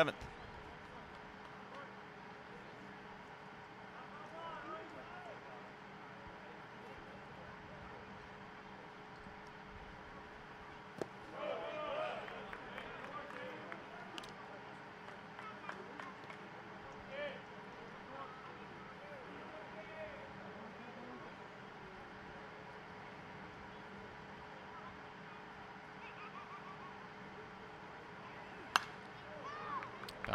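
Quiet ballpark ambience with faint distant crowd voices, then near the end one sharp crack of a metal bat hitting a pitched ball.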